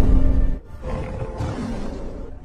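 A tiger roar sound effect over dramatic music. A loud roar breaks off about half a second in, and a second, softer roar follows and fades away.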